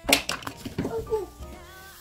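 A paperback picture book's page being turned, with a brief paper rustle just after the start. Faint, soft voice sounds follow.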